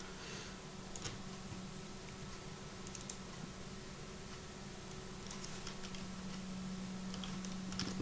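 Faint, scattered clicks of a computer keyboard and mouse while working in 3D software, over a steady low hum.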